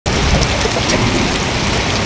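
Heavy rain falling, a loud steady rush with no break.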